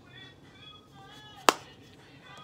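Single sharp click as the Urban Decay Moondust eyeshadow palette's lid is snapped shut, about one and a half seconds in, over faint background music.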